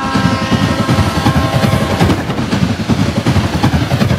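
A diesel High Speed Train (InterCity 125) power car passes close by with a loud, uneven rumble. Over the first two seconds or so a steady whine sits on top of the rumble and then fades.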